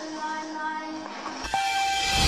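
A quiet, steady held chord of several tones at once, like a sustained synth or horn-like note. About one and a half seconds in there is a click, and a single higher held tone takes over.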